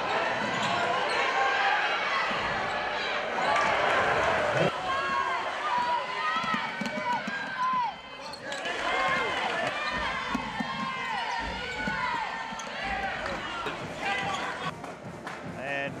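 Basketball game sounds in a gymnasium: a ball bouncing on the hardwood court and sneakers squeaking in short bursts over a steady crowd murmur.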